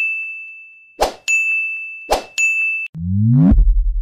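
Sound effects for an animated subscribe button: a quick swish followed by a ringing ding, repeated three times. Near the end, a rising sweep lands on a deep, pulsing bass hit.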